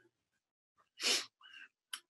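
About a second in, a man takes a short, sharp breath in, followed by faint mouth clicks, just before he starts to speak.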